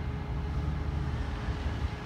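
Steady low rumble of outdoor background noise, with a faint steady hum above it.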